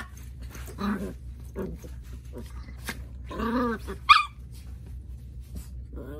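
Small curly-coated dogs play-fighting on a bed, growling in short bouts, with one sharp bark about four seconds in and light scuffling on the bedding between calls.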